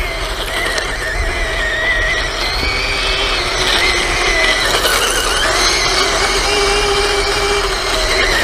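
Toy RC tank's small brushed electric motors and plastic gearboxes running, a steady whine made of several tones that waver up and down in pitch as it drives and steers, over the noise of its tracks on wet gravel.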